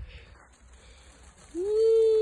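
A person's voice: after a quiet moment, a single held "ooh" starts about one and a half seconds in, rising briefly and then steady in pitch.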